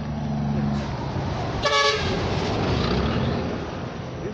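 A vehicle passing on the road, its engine drone and tyre noise steady, with one short horn toot a little before the middle.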